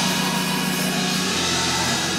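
Organ holding a steady sustained chord under the preaching, over a hazy room and congregation background.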